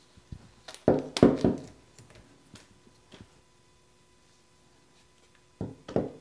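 Large rubber bands pulled off a two-part plaster mold, with two loud snaps about a second in, then a few light ticks and a sharp knock of the plaster halves near the end.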